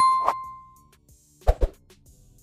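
Subscribe-reminder sound effect: a clear bell-like ding that fades out over about a second, with a soft plop just after it starts. Two quick clicks follow about a second and a half in.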